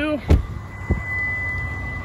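Genesis car's warning beep sounding as a thin, steady high tone that grows stronger in the second half, with two short thumps in the first second.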